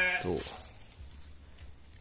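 A goat's drawn-out bleat ending just after the start, followed by faint background.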